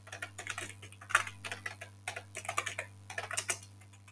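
Computer keyboard typing, keystrokes coming in several quick bursts with short pauses between them, over a steady low hum.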